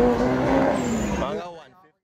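A vehicle engine running at a steady, slowly rising pitch under people's voices. All of it fades out about one and a half seconds in.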